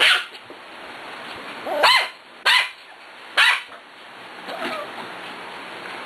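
Pembroke Welsh corgi puppy barking: four short, high yaps in the first few seconds, then a softer one near the end.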